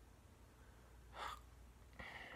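Near silence, broken about a second in by one short, sharp breath from a man.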